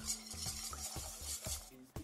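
Wire whisk beating eggs with cream and milk in a stainless steel bowl: a steady run of quick scraping, splashing strokes that stops just before the end.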